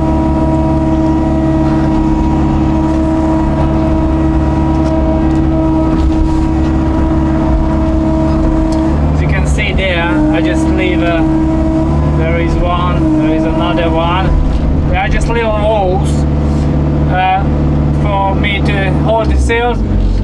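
Hitachi long-reach excavator heard from the cab: the diesel engine runs steadily under load with a steady hydraulic whine as the bucket digs and lifts mud. The whine breaks and shifts in pitch about nine seconds in, and the engine note drops near the end.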